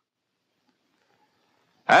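Near silence on an old film soundtrack, until a man's narration starts again near the end.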